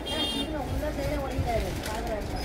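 A woman talking softly over a steady low rumble.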